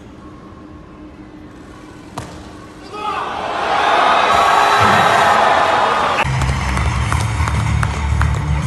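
A weightlifting crowd in an arena cheers loudly as a heavy barbell is jerked overhead. A sharp knock a little after two seconds in comes from the jerk itself. At about six seconds the cheering gives way to music with a heavy bass beat.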